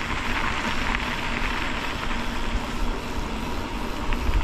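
Steady wind rushing over the microphone, with the bicycle's tyres rolling along the trail as it is ridden.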